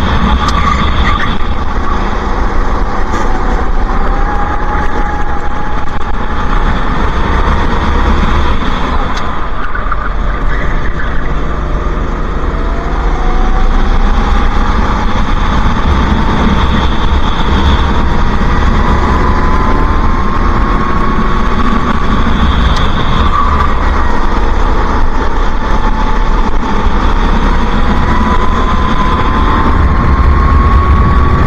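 Racing kart engine at speed, heard from on board with a heavy low rumble underneath. Its pitch dips about ten seconds in as the driver comes off the throttle, then climbs slowly as the kart accelerates, with smaller dips and rises near the end.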